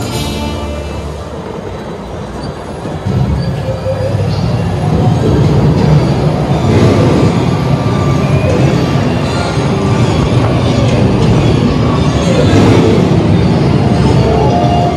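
Dark-ride show soundtrack: music over a heavy low rumble that swells about three seconds in and stays loud.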